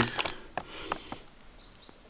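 A few faint scattered light clicks, with a brief faint rising chirp late on.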